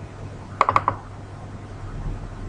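A quick run of about four sharp clicks from a computer's mouse or keys, a little over half a second in, over a faint steady low hum.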